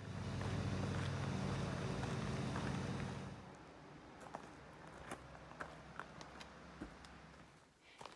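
A steady low engine-like hum for about the first three seconds, then a quieter stretch of outdoor ambience with scattered light clicks of footsteps.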